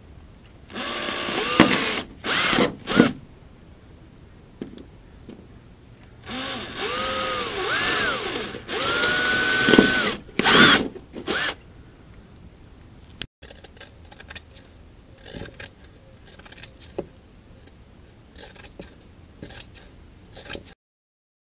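Electric drill with a twist bit boring through a fibreglass canoe hull in short bursts, its motor whine rising and falling as the trigger is squeezed and eased off. There are two spells of drilling, a brief one and then a longer one about six seconds in. Only faint taps and ticks follow.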